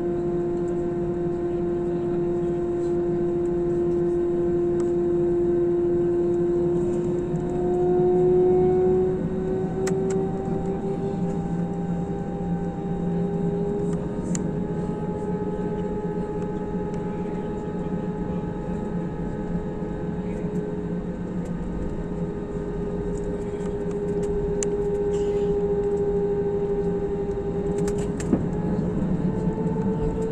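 Airbus A320 jet engines heard from inside the cabin while taxiing: a steady whine over a low hum, rising slightly in pitch about eight seconds in and again near the end as thrust is increased. There is a short click near the end.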